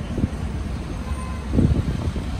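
Low outdoor rumble of road traffic and wind, swelling briefly a little after the start and again near the end.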